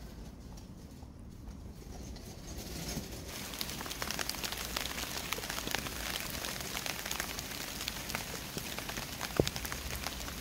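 Rain falling, with many separate drops ticking; it grows heavier about three seconds in. A single sharp tap near the end.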